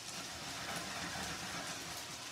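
Udon noodles frying in sesame oil in a hot pan: a steady sizzle.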